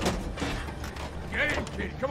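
A stopped truck's engine idling low, with a few knocks and creaks from the cab in the first second, then a man calling out briefly near the end.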